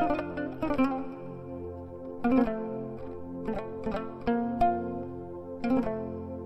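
Instrumental music: a plucked string instrument picks out a melody in sharp, ringing notes over sustained low notes.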